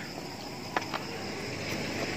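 Night insects chirping steadily, with two faint clicks about a second in.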